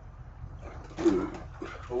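Foil snack-mix bag crinkling as it is handled and held up, with a short grunt-like vocal sound about a second in.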